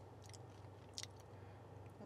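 Near silence: a faint steady low hum, with two faint short clicks, one about a quarter second in and one about a second in.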